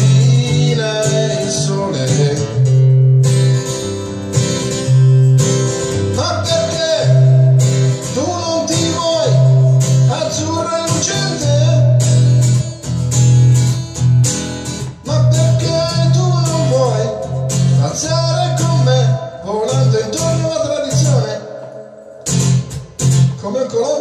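Acoustic guitar strummed in a steady rhythm, with a sung melody over it in places.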